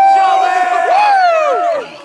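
Loud, drawn-out shouting and cheering from a group of people: one long held yell, then a second that rises and falls away near the end, at the close of a four-beer funnel chug.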